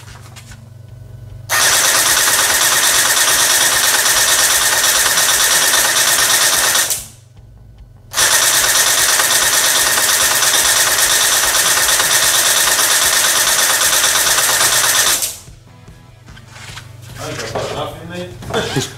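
ZeHua M249 SAW V4 gel blaster firing full auto in two long bursts, its electric gearbox cycling in a fast, steady buzz, with about a second's break between the bursts.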